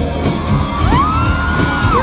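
Indie rock band playing live: electric guitars and drums, with a high note that slides up about a second in, is held for about a second and falls away.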